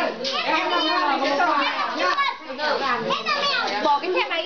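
A group of children's voices talking and calling out over one another all at once while they play, with no pause.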